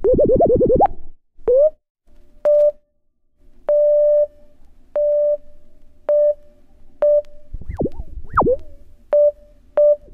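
Sparse synthesizer part of an electronic dance track in a DJ mix. A quick run of rising pitch sweeps opens it, followed by a short drop-out, then short blips of a single steady tone about once a second, with two more rising sweeps near the eighth second.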